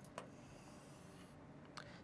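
Near silence, with the faint scratch of a stylus drawing a line on an interactive screen and a light tap near the start and another near the end.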